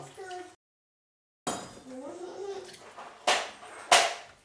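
A woman's voice murmuring without clear words, cut by about a second of dead silence. Near the end come two sharp knocks of a knife on a wooden cutting board as ginger is sliced.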